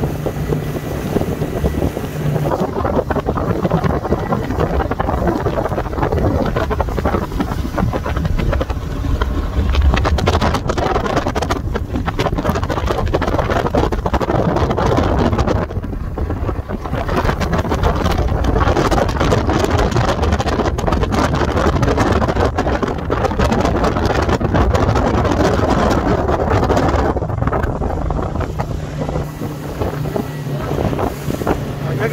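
Speedboat's engine running at speed, with wind buffeting the microphone and water rushing past the hull.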